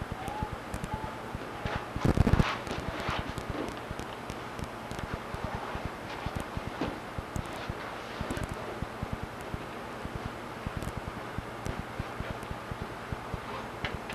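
A heavy thud about two seconds in as a person is taken down onto a padded floor mat, followed by lighter scuffing and clothing rustle on the mat, over a steady hiss with faint crackle.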